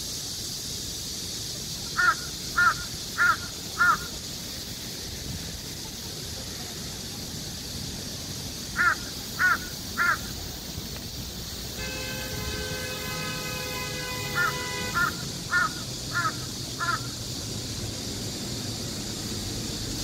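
A crow cawing in short series of evenly spaced caws about half a second apart: four caws about two seconds in, three near the middle, and five more in the second half.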